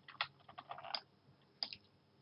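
Faint clicks from a computer mouse and keyboard: one click near the start, a quick run of clicks around half a second in, and one more near the end.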